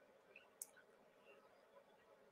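Near silence: faint room tone, with one brief faint click a little over half a second in.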